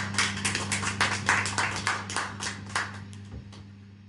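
A small audience applauding, with the separate claps thinning out and fading away about three and a half seconds in. A steady low hum runs underneath.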